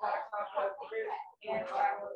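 Speech: a person reading text aloud during a debate reading drill.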